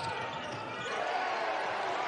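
Basketball game sound on the court: a ball bouncing and players moving on the hardwood floor, with faint voices.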